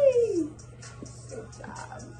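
A woman's short, high exclamation that falls in pitch, over background music; a few softer sounds follow in the second half.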